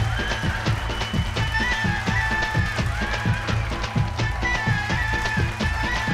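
Dance music playing for a stage performance: a steady drum beat with a high melody line held over it.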